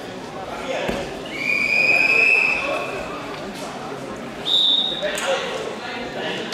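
Referee's whistle in a wrestling hall: one long steady blast of about a second, then a shorter, higher whistle near the end, over hall chatter. It comes as a pin on the mat breaks up and the wrestlers stand.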